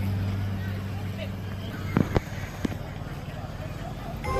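Background music fading out in the first couple of seconds, leaving outdoor ambience of people's voices and road traffic. Three sharp knocks or clicks come a little past halfway.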